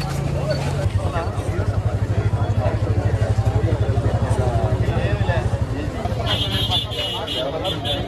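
Crowd chatter in a street over a vehicle engine idling close by: a loud low throb with a fast, even pulse. Short high beeps repeat from about six seconds in.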